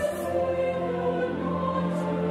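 A choir with orchestral accompaniment performing a slow piece in long held chords. The harmony shifts once, about a second and a half in.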